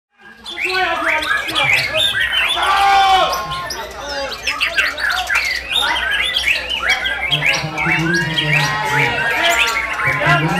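Several caged songbirds, white-rumped shamas, singing at once in a dense mix of quick whistles and chirps. Men's voices join underneath from about seven seconds in.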